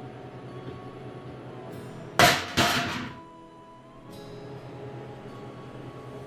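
Two loud bangs about half a second apart, each ringing briefly: a deliberate startle noise for a puppy's sound-sensitivity test.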